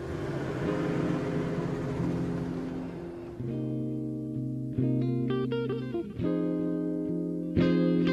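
Background film-score music led by guitar over a steady low sustained bass. From about the middle, new plucked chords come in roughly every second and a half.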